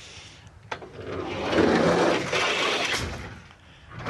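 Seatbelt crash-simulator sled with a belted rider released down its ramp: a click as it lets go, a swelling rolling rumble as it runs down, then a thump about three seconds in as it stops dead, simulating a 7 km/h frontal impact.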